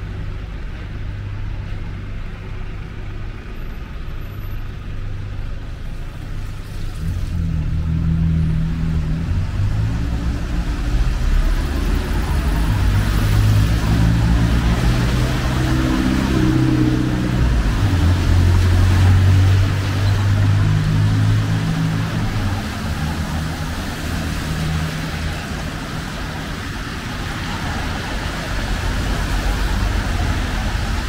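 Road traffic on a wet city street: the low rumble of a heavy vehicle's engine that shifts pitch in steps and grows louder from about seven seconds in, peaking past the middle, with tyres hissing on the wet road.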